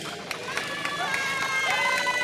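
Two riders screaming as a reverse-bungee slingshot ride capsule launches: long, held screams that start about half a second in and overlap.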